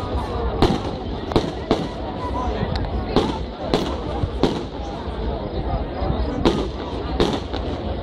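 Fireworks display: aerial shells bursting in an irregular series of sharp bangs, about a dozen in all, over a steady background of crowd chatter.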